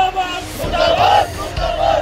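A group of men shouting protest slogans together in loud, drawn-out calls.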